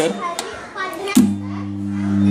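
An electric massage machine switched on with a click about a second in, then running with a steady low hum as it vibrates a homemade earthquake table.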